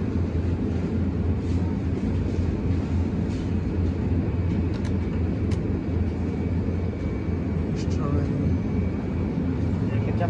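Steady low hum from an open refrigerated display cooler in a convenience store, with a few faint clicks around the middle.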